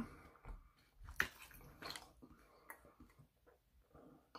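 Quiet, scattered soft ticks and crinkles, the loudest about a second in, from a paper sandwich wrapper being handled.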